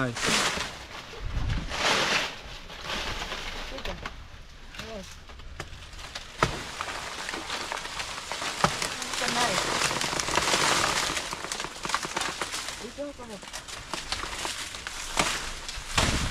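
Dry banana leaves and stems rustling and crackling as a banana bunch is cut down with a machete, with two sharp knocks in the middle. Low voices come in briefly.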